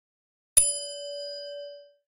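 A single notification-bell ding sound effect, struck once about half a second in and ringing on with a steady middle tone and fainter high overtones that fade out near the end.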